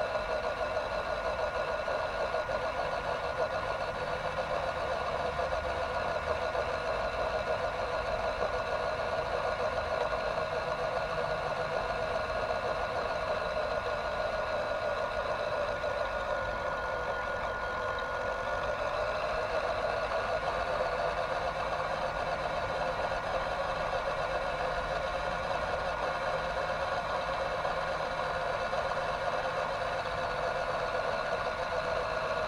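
Electric drive motor and gearbox of a WPL B-1 1/16-scale RC military truck whining steadily as it drives, picked up by the microphone riding on the truck. The pitch dips briefly about halfway through, then rises again.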